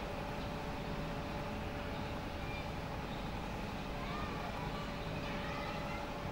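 Steady low background rumble with a faint constant hum and no speech: the hush of an assembled crowd holding a moment of silence. A few faint, distant voices come through near the end.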